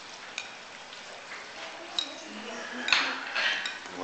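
Tableware clinking: a metal ladle and cutlery knocking against plates and the hot pot, three sharp clinks, the loudest about three seconds in.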